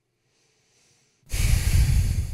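Near silence, then about a second in a woman's loud breath puffed out through the nose close to the microphone, a short snort of amusement lasting about a second.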